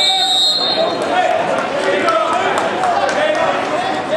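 A short, high whistle blast at the very start, typical of a referee's whistle stopping the action in a wrestling bout, over spectators' voices calling out in a gymnasium.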